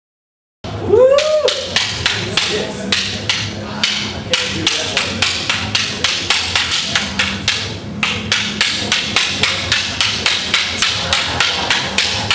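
Wooden practice sticks clacking against each other in a fast, steady rhythm, about four strikes a second with a few brief breaks, as two partners run a stick weave drill of alternating high and low strikes.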